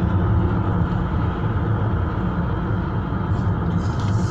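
Steady road and engine noise of a car driving on a highway, heard from inside the cabin: an even low rumble with no change in level.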